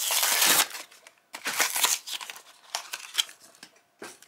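Cardboard backing card being torn off a plastic blister pack, with the plastic blister crinkling. A loud rip in the first second, a second burst of tearing and crinkling about a second and a half in, then smaller crackles.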